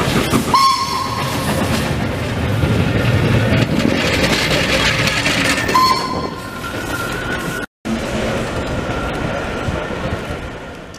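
Steam tram engine passing with its trailer cars: two short whistle blasts, about half a second in and again about six seconds in, over steady steam hiss and the rumble of wheels on the rails.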